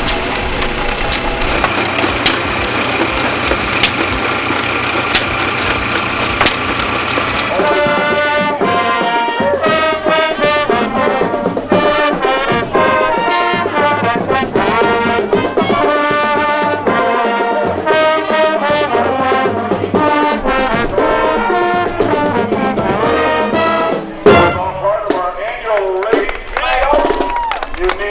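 Old engine-driven machinery running steadily with a tick about once a second. About seven seconds in it gives way to a marching band's brass section, trombones and trumpets, playing a march. Near the end the music is broken by a sudden loud knock.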